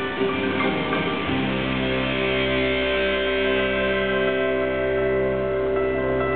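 Live rock band of electric guitar, bass guitar and keyboard playing, settling about a second in onto one long held chord that rings on steadily: the closing chord of the song.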